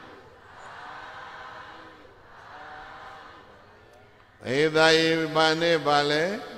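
Buddhist monk chanting Pali verses in a drawn-out, held tone. The first few seconds hold only faint, soft chanting; the loud chanting line comes in about four and a half seconds in.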